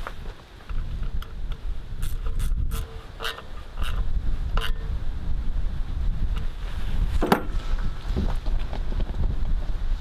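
Wind buffeting the microphone, with scattered light clicks and knocks as a propane regulator and its brass fittings are handled on a 20 lb propane cylinder. The sharpest click comes about seven seconds in.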